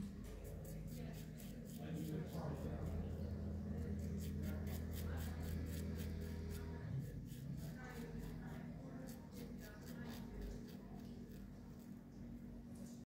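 Straight razor fitted with a The Gentlemen blade scraping through lathered beard stubble in quick repeated strokes, a crisp scratching several times a second. The shaver finds the blade cuts well but tugs rather than glides.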